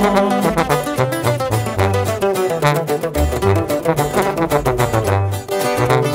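Sierreño instrumental break: twelve-string acoustic guitar strummed and picked in a quick rhythm over a tuba bass line of separate low notes.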